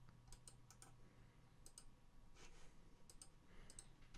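Faint clicks of a computer mouse, a few single and paired clicks spread over a few seconds, over near-silent room tone with a low hum.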